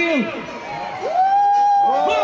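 Children shouting and cheering in celebration on an ice hockey rink. About a second in, one long high shout rises and is held.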